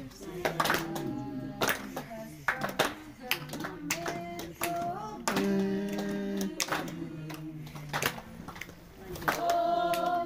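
People singing together with hand claps, mixed with talk from the crowd.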